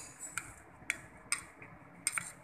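A metal spoon clinking lightly against a plate while stirring oil into a red chili chutney, about four sharp ticks roughly half a second apart.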